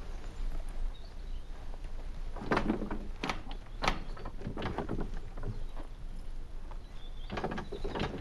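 Wooden chariot frame creaking and knocking as a man steps onto it and shifts his weight, a cluster of short creaks and knocks through the middle and again near the end, over a low steady rumble.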